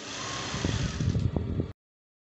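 Sewing machine running, stitching seams: a steady hum that turns into rapid needle strokes about half a second in, then cuts off suddenly near the end.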